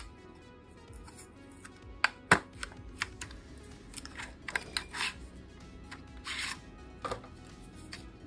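Packaging for a phone case being opened over soft background music: several sharp clicks and taps of a paper sleeve and plastic tray, the loudest a little over two seconds in, and a brief rustling scrape about six seconds in.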